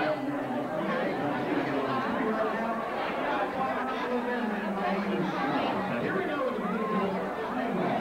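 Crowd chatter: many people talking at once, a steady babble of overlapping voices with no single voice standing out, on the muffled sound of an old VHS camcorder tape.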